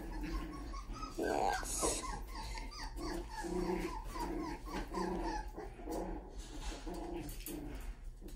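Puppies growling and whining in play as they wrestle: a quick string of short, repeated growls and whimpers.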